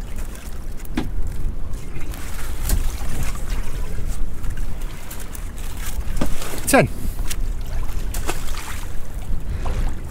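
Steady low rumble of wind and boat noise on open water, with a few sharp knocks as a plastic-mesh lobster pot is handled. There is a short falling squeak about seven seconds in.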